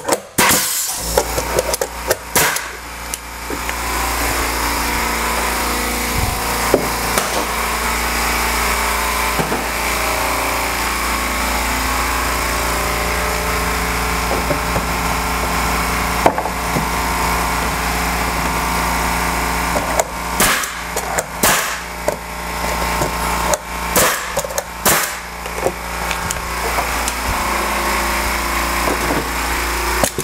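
Electric air compressor (California Air Tools) starting up about a second in, just after a pneumatic finish-nailer shot, then running steadily to refill its tank, with a low hum. A few sharp knocks sound over it about two-thirds of the way through.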